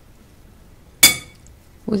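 A metal spoon clinks once against a glass mixing bowl: a single sharp tap about a second in, with a brief ring.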